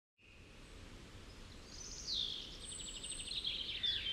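Faint outdoor ambience fading in, with small birds chirping. About halfway through, a high glide is followed by a rapid trill of quick repeated notes.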